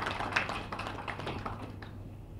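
Faint room noise during a pause in speech: a low steady hum with a few light clicks or taps.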